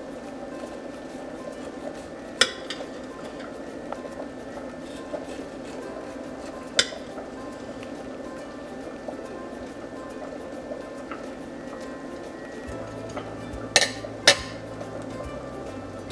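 Knife clinking against ceramic plates while banana bread is sliced: four sharp clinks, the last two close together near the end, over soft background music.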